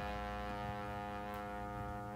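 Dance orchestra holding one long, quiet chord, with no beat, in a pause between the band's accented hits.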